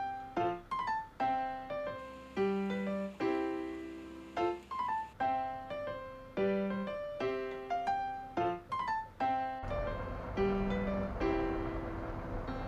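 Background piano music: a light melody of single struck notes, each fading quickly. Near the end a steady noise comes in under the music.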